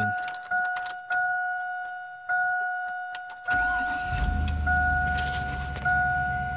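A 2000 Chevy Suburban's dashboard warning chime sounds repeatedly, about once a second, with the key on. About three and a half seconds in, the engine cranks, starts and settles into a steady idle.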